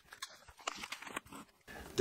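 Faint crinkling of the clear plastic bags and light knocks as bagged cardboard filament spools are handled and set down on a wooden desk, a few scattered short sounds with gaps between.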